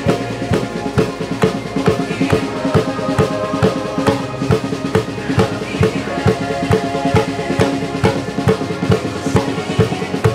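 Acoustic drum kit played with sticks in a steady, busy groove of kick, snare and cymbal hits, mixed with a multitrack backing track of the song whose sustained instrument tones run underneath.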